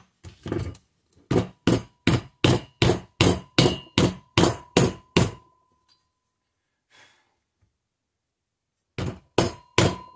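Nylon-faced mallet tapping a driver rod to push a valve guide deeper into a Kohler Courage cylinder head. A steady run of about a dozen sharp blows, roughly three a second, each with a short metallic ring, then a pause, then three more blows near the end. The guide moves easily under the blows because it is a loose fit in the head.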